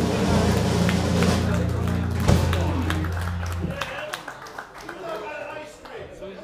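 Live band ending a song: a held final chord with the bass ringing low, a last drum hit about two seconds in, then the chord dies away just before four seconds, leaving room chatter.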